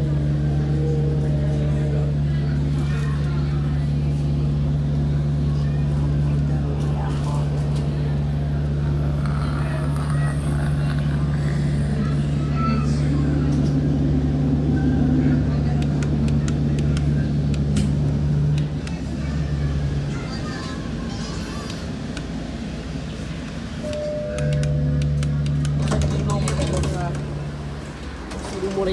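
An ugly, steady low hum inside a public-transport vehicle's cabin, the 'buf' sound it makes. It drops out about two-thirds of the way through and comes back a few seconds later, then fades near the end.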